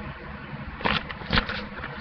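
A paper packing slip being handled, rustling in two short bursts about a second and a second and a half in.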